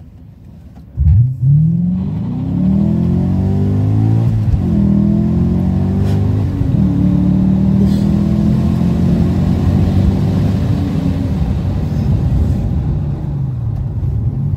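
BMW E39 M5's 5-litre S62 V8, fitted with a Supersprint X-pipe exhaust, accelerating hard through the gears, heard from inside the cabin. It comes in suddenly about a second in and rises in pitch, drops at two upshifts, and then climbs steadily again.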